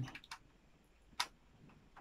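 A faint click, then one sharp click a little after a second in: the power adapter's plug being pushed into the socket of a set-top box.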